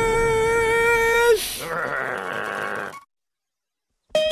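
A cartoon seagull's long, held cry on one steady pitch for about a second and a half, dipping at the very end, followed by a softer, noisier sound that cuts off about three seconds in, leaving silence.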